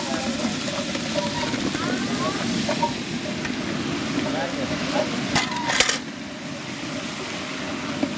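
Ground wet masala paste poured into hot mustard oil in a large aluminium pot, sizzling steadily as it hits the oil. There are two metal clanks about five and a half seconds in, and the sizzle eases a little over the last two seconds.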